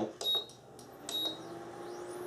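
Induction cooktop's control panel beeping twice as its buttons are pressed, then a steady low hum as the cooktop switches on.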